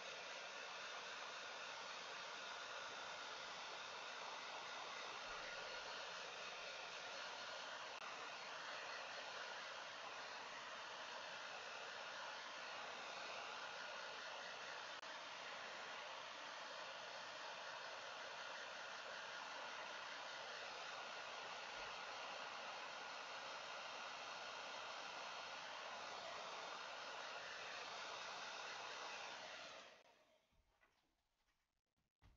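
Hand-held hair dryer blowing steadily over a wet watercolour painting to dry the paint: an even rush of air with a faint motor whine, switched off at the very end.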